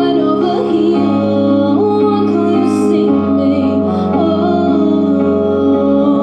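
A woman singing live through an outdoor stage PA system, over a backing of sustained chords and bass notes.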